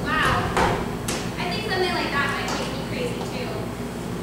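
Actors' voices speaking on a stage, picked up from the audience, with a few short sharp sounds in the first second and a steady low hum underneath.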